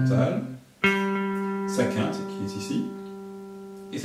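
Electric guitar picking single notes: one struck about a second in and left to ring, a second note joining a little under a second later. The notes are chord tones of a C chord. A voice speaks over them.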